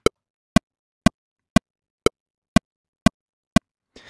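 Pro Tools Click plug-in metronome playing back at the default 120 BPM: eight short, sharp clicks evenly spaced, two a second.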